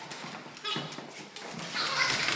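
A dog's claws clicking and scrabbling on a tiled floor as it chases a small toy ball, with a brief high squeak about two-thirds of a second in and a louder scuffle near the end.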